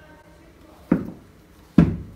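Two sharp knocks about a second apart, the second louder, as a cast-iron hand plane is handled and knocked against the wooden workbench.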